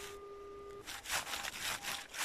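Garrett AT Pro metal detector sounding a steady single tone on a deep, stable target that reads 60–61. The tone cuts off just under a second in, followed by rustling over snow-covered leaves and a few faint short beeps.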